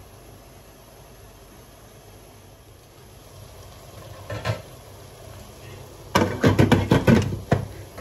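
A glass lid is set down onto a stainless steel pot, clattering and rattling for about a second and a half near the end, after a single knock about halfway through. Underneath is a faint steady sizzle of vegetables frying in oil.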